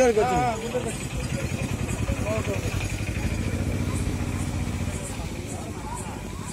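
A small engine running with a fast, even beat, fading toward the end, after a brief voice at the start.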